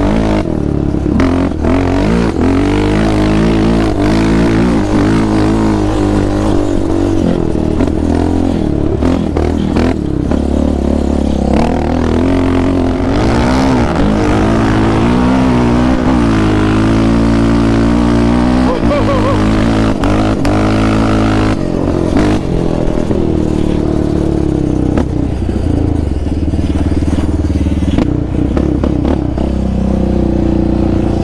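2019 Yamaha Raptor 700R sport quad's single-cylinder engine running under way, its pitch rising and falling again and again as the throttle is worked.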